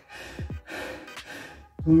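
A man panting hard, out of breath after a long set of burpees: about three heavy, gasping breaths, each about half a second long.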